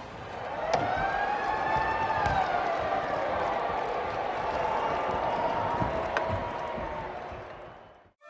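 Ice hockey arena crowd noise: a steady din of many voices, with a couple of sharp knocks, fading out near the end.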